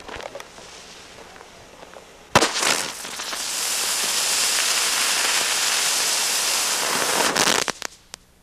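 A small ground firework going off: a sharp crack about two seconds in, a moment of crackling, then a steady hissing spray of sparks lasting about five seconds that cuts off suddenly near the end.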